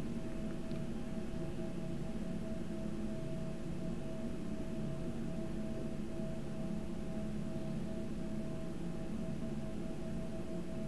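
A steady low hum with a faint held tone above it, unchanging throughout.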